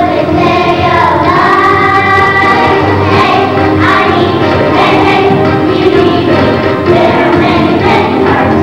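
A group of children singing a song together over musical accompaniment, loud and continuous.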